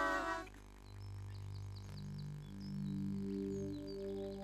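Soft, slow background music of long held low notes that change every second or so, with faint short bird chirps over it. A voice trails off in the first half second.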